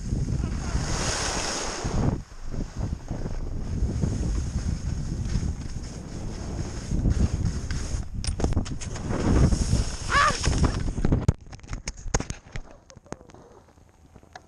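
Wind buffeting the microphone of a moving camera along with the hiss and scrape of sliding over packed snow down a ski slope. About eleven seconds in the rushing noise cuts off, leaving a few clicks and knocks of the camera being handled.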